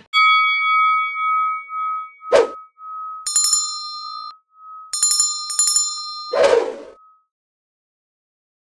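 Subscribe-button sound effect: a bell-like ding that keeps ringing, a short swish about two seconds in, then two runs of rapid bell rings, and a longer swish near the end.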